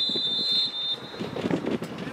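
Referee's whistle blown in one long, steady blast that stops about a second in, with a sharp knock of the ball being kicked at the start. Players' shouts follow.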